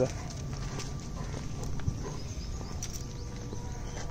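Footsteps and scuffing on a dirt and gravel path over a steady low rumble.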